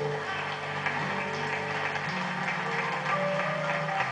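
Instrumental introduction to a gospel choir song: keyboard playing sustained chords that change every second or so, with faint light ticks above them.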